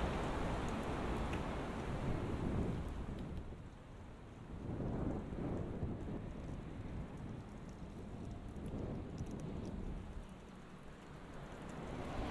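Outdoor city-street ambience: a low, rushing noise that swells and fades, with faint light ticks over it.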